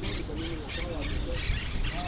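Outdoor ambience: low wind rumble on the microphone, birds calling, and faint overlapping voices in the distance.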